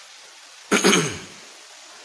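A man clearing his throat once, a short, loud rasp about a second in.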